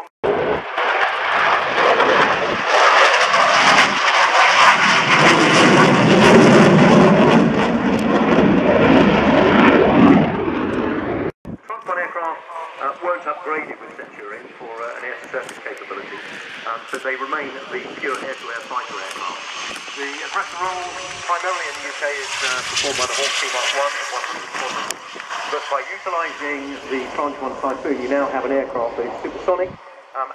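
Military jet passing overhead, loud and deep for about eleven seconds, then cut off abruptly. After that, quieter jet engine noise runs under speech, with the engines swelling in a higher pitch about two-thirds of the way in.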